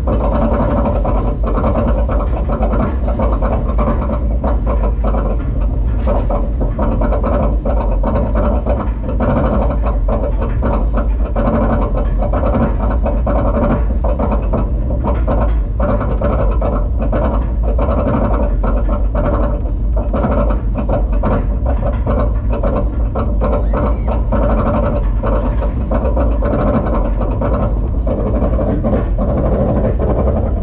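Arrow Dynamics steel roller coaster train climbing a chain lift hill: the lift chain rumbles and clanks steadily under a running series of clicks from the anti-rollback ratchet. The clicks thin out near the end as the train nears the crest.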